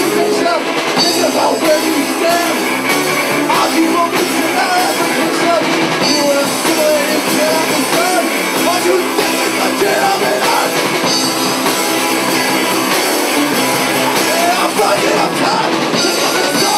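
A rock band playing live, with electric guitars and a drum kit, and a man singing lead into a microphone.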